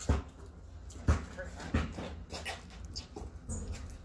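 A basketball bouncing on a concrete driveway as it is dribbled, with four or five thumps about a second apart. A few short high-pitched cries sound between the bounces.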